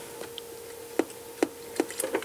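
About four light clicks and taps from a plastic soldering station case being handled and turned over, the sharpest about a second in, while solder wire is pushed into a screw hole in its base.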